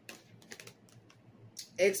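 A few light clicks and flicks of a deck of playing-card-sized fortune-telling cards being handled as a card is drawn.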